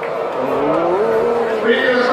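A voice with one long, rising drawn-out note, then more voice, played from a television broadcast.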